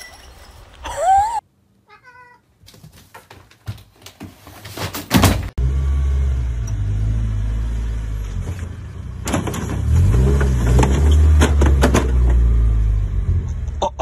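A few short sliding cries near the start. Then, from about five seconds in, a lowered Subaru BRZ's flat-four engine and exhaust run with a deep, steady drone as the car creeps over speed bumps. The revs rise and fall briefly around ten seconds in.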